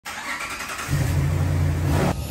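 Jeep Wrangler engine starting: it catches about a second in and then runs with a steady low rumble.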